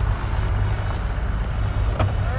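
Outboard boat motors idling, a steady low rumble.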